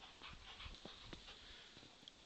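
Faint sounds of a dog close by, with a few soft, irregular thuds of footfalls in snow.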